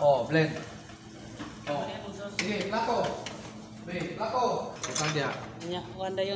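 Several people talking indistinctly in short stretches, with a few light clinks of utensils and cookware.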